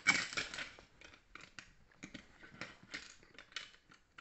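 Plastic Lego bricks being handled: a rattling clatter about a second long at the start, then a run of small clicks and rattles as pieces are picked up and fitted.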